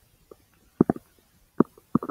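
Bowel sounds from a person's large intestine: a handful of short gurgles and pops in two seconds, two of them close together just under a second in.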